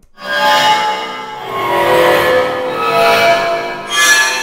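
Heavyocity Gravity 'Bowed Piano Swell' sample patch playing in Kontakt: a dense, sustained cluster of bowed-piano tones. It swells in just after the start, eases about a second in, then swells again and keeps sounding.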